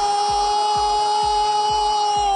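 A football commentator's long, drawn-out goal cry held on one high note, its pitch starting to sag near the end, over background music with a steady quick beat.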